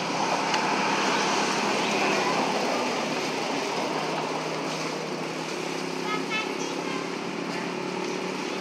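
Steady outdoor background noise with a faint low hum, like distant traffic. About six seconds in there is a short run of quick high chirps.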